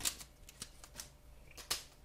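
A stack of trading cards being slid out of a torn foil pack wrapper: a few sharp crinkling clicks of foil and card stock, the loudest one near the end.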